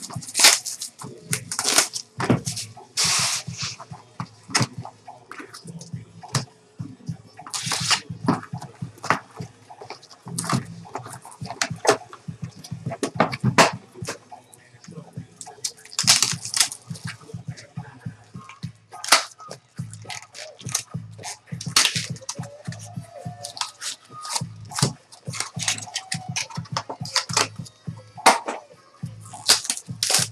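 Trading-card pack wrappers crinkling and tearing open, in quick irregular bursts, with a few longer rips.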